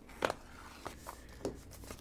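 Hands handling a trading card box and its cardboard packaging: about three faint taps and rustles, a little over half a second apart.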